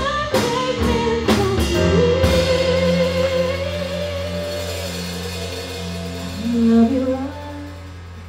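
Live band music: drum kit, electric guitar, bass and keyboard under a female singer who holds one long note. Drum hits in the first two seconds give way to sustained chords, the melody steps lower a little before the end, and the sound then drops away.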